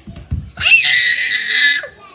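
A child screaming loudly for a little over a second, one high held cry, with a couple of dull thumps just before it.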